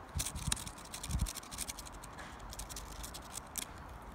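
Conifer sprigs rustling and scratching close to the microphone as the foliage is handled, heard as a run of dry crackles, with a few low handling thumps in the first second or so.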